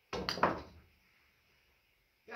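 A cue striking a golf ball on a pool table, then a quick run of sharp clacks as the golf balls hit one another, all within about half a second near the start.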